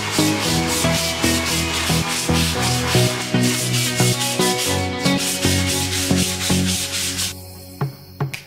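Sandpaper rubbed by hand over a flat wooden board in quick repeated strokes, stopping about seven seconds in, over background music.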